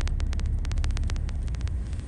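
Car driving along a rough road, heard from inside the cabin: a steady low rumble from road and engine with a rapid, irregular run of sharp clicks over it.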